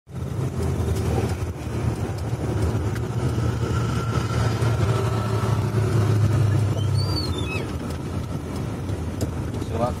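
Vehicle engine and road noise heard from inside the cab: a steady low rumble that eases slightly after about six seconds, with a brief high squeal around seven seconds in.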